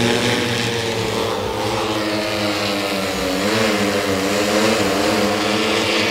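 A multirotor agricultural spraying drone's propellers running in flight: a steady, many-toned hum whose pitch wavers slightly up and down as the motors adjust their speed.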